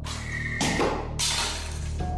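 A whistling arrow flies past: a short, loud, high whistle with rushing whooshes of air, the second whoosh near the end being the loudest, over low background music.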